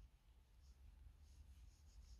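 Near silence with faint, soft rustling of yarn being drawn through loops on a crochet hook as a double crochet stitch is worked.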